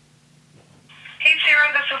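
A woman's recorded voicemail message played back through a mobile phone's loudspeaker, the voice thin and tinny, starting a little over a second in after a faint steady hum.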